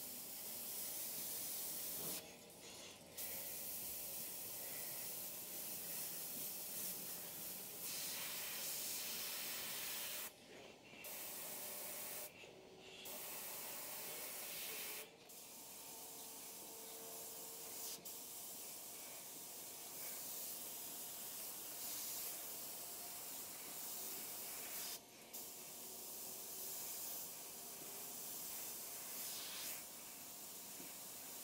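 GSI Creos PS.770 dual-action airbrush hissing as compressed air sprays paint in fine detail passes. The steady hiss breaks off briefly several times.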